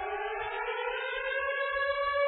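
A siren-like tone with a rich stack of overtones, rising slowly in pitch for about a second and then holding steady, opening the program's return music after a station break.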